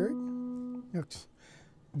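A two-note interval (a third) plucked on a Guild X-500 archtop guitar, ringing and fading, then damped just under a second in. A brief vocal sound follows about a second in, then near silence.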